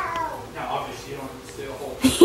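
A toddler's short, high-pitched whining call that rises and falls right at the start, followed by softer fragments of babble.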